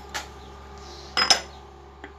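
A metal measuring cup or spoon clinking against a stainless-steel mesh sieve as a dry ingredient is tapped out into it: one light clink just after the start, then a louder quick run of clinks a little over a second in.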